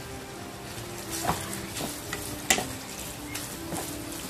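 Clam curry sizzling in a hot non-stick wok just after a splash of water has gone in, stirred with a spoon that knocks sharply against the pan a few times, loudest about two and a half seconds in.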